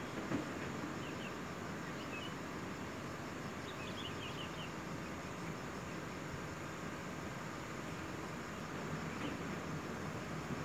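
Steady outdoor background hiss with faint, short high bird chirps a few times, in little runs of three or four, and a brief knock just after the start.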